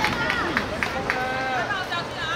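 High-pitched young voices shouting and calling out across the pitch, with a few sharp claps or knocks in the first second.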